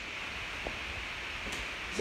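Steady room hiss with two faint, short taps, about two-thirds of a second and one and a half seconds in.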